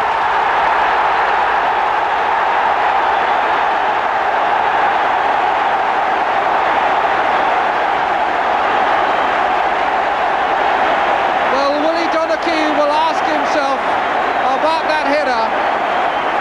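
Football crowd roaring and cheering a home goal, a loud steady roar that eases slightly; a single voice rises above it in the last few seconds.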